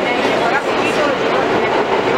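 Inside an R160A subway car in motion: steady noise of the wheels on the rails, with passengers' chatter mixed in.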